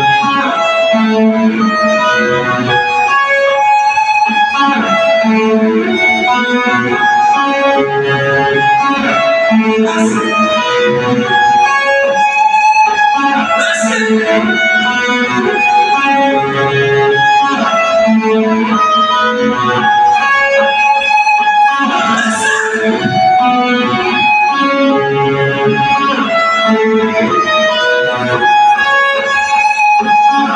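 Live electric guitar playing a melodic lead riff through a festival PA, the same phrase repeating about every eight seconds.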